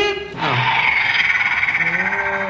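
Motorised spinning fan in the centre of a DX Shin Kamen Rider Typhoon toy belt running, a steady buzzing whir with a fast flutter. The motor is strong and makes the fan blade vibrate hard.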